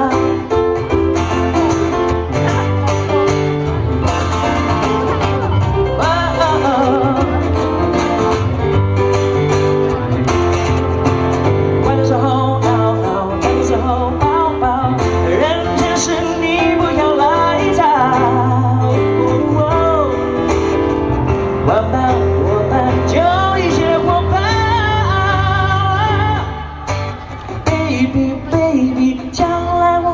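Live pop song: a male singer with acoustic guitar and backing accompaniment. The music dips and breaks up briefly about four seconds before the end.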